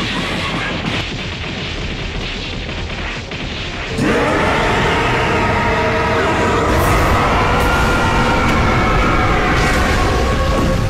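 Animated fight soundtrack: a dense rumbling din crackling with many small impacts, then about four seconds in a sudden, louder boom that swells into music with several notes held steady to the end.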